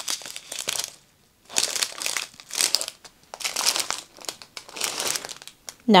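Strips of small plastic bags full of diamond painting drills crinkling as they are lifted and shuffled by hand, in several bursts with short pauses between.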